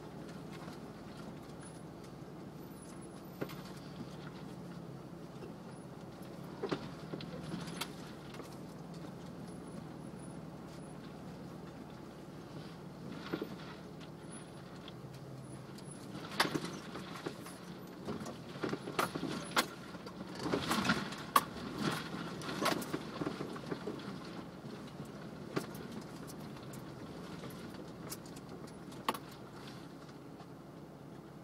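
Off-road vehicle's engine running steadily at low trail speed, heard from inside the cab, with scattered clatters and knocks from the body and loose items as it crawls over rough rock, busiest a little past the middle.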